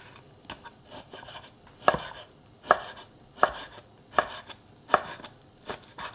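Chef's knife cutting raw beef brisket into chunks on a wooden cutting board. The blade knocks on the board in a steady series, about one stroke every three-quarters of a second.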